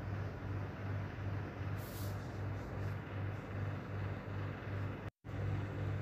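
Steady kitchen background with a low hum throbbing about two to three times a second over an even hiss, with a gas burner lit under a pan of caramel being stirred. The sound cuts out for an instant near the end.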